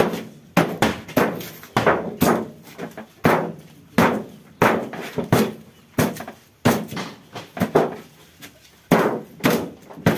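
A long steel bar jabbed down again and again into a refrigerator panel, chipping out its foam insulation: dull, knocking strikes about one to two a second, each with a short rattle.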